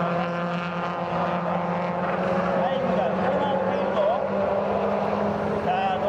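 Mazda Roadster race cars' engines running on the circuit, a continuous mix of several cars with pitch repeatedly rising and falling as they rev and pass.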